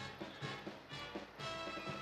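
Brass band music playing, with a steady beat.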